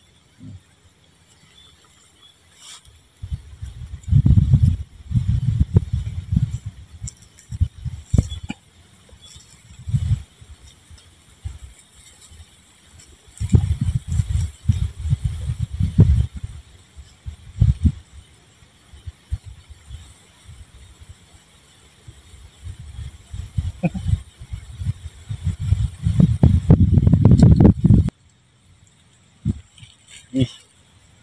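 Wind buffeting the microphone in low rumbling gusts of a few seconds each, with quieter gaps between; the longest gust comes near the end and stops abruptly.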